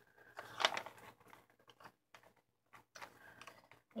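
Paper rustling as pages of a handmade paper journal are handled and turned, a cluster of soft rustles and light clicks about half a second in, then fainter scattered ones.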